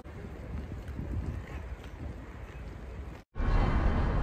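Wind rumbling and buffeting on the camera microphone outdoors, with a gusty, uneven level. It cuts out for an instant about three seconds in, then comes back louder.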